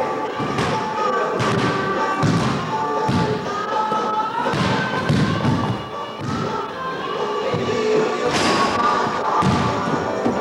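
A basketball being dribbled and bounced on a hardwood gym floor, a series of irregularly spaced thuds, with music playing underneath.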